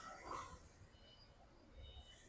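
Near silence, with only a faint, brief sound about a third of a second in.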